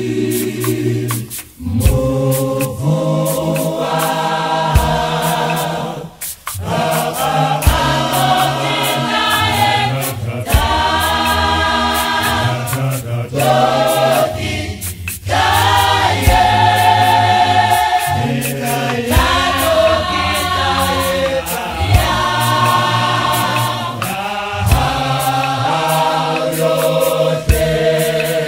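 A cappella gospel choir singing in multi-part harmony, with sharp claps marking the beat in the clap-and-tap style. The singing pauses briefly twice between phrases.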